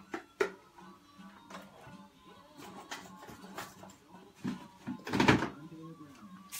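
Music playing from a television in the room, with a few sharp clicks near the start and a brief, louder knock about five seconds in.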